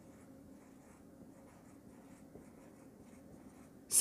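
Marker writing on a whiteboard: faint, irregular scratching strokes of the pen tip on the board.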